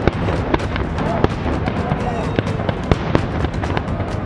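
Aerial fireworks shells bursting, a rapid, irregular string of sharp bangs over a continuous din of crackle.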